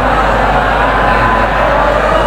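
Loud, continuous human voices over a microphone and public-address system, running on without clear pauses.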